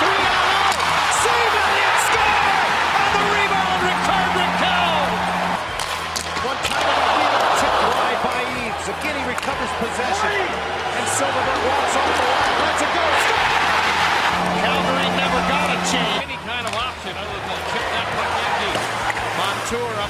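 Ice hockey arena broadcast sound: a crowd cheering in swells, with sharp clacks of sticks and puck and voices mixed in. Twice a steady low tone lasts about two seconds.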